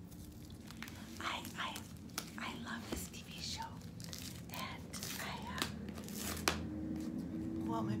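A small cardboard shipping box being torn open by hand, with repeated sharp rips of tape and cardboard and some crinkling of packaging.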